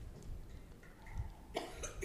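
Quiet room tone, then a brief cough about one and a half seconds in.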